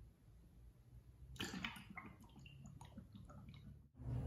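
Faint clicks and light taps as a filled plastic hummingbird feeder is handled, starting about a second and a half in.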